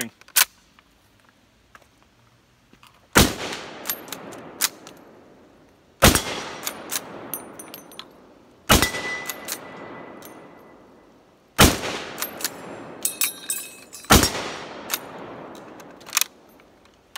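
Steyr Mannlicher M95/30 straight-pull carbine in 8x56mmR fired five times, about three seconds apart, each shot echoing and dying away over a couple of seconds. The straight-pull bolt clicks as it is worked between shots, and a short steady ringing note follows the third shot.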